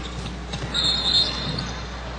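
Arena crowd noise with a basketball bouncing on the court. About a second in, a referee's whistle sounds for roughly a second, calling a kicked-ball violation.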